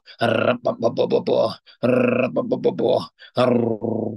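A man praying aloud in tongues: fast streams of repeated nonsense syllables, spoken in bursts with short pauses between them.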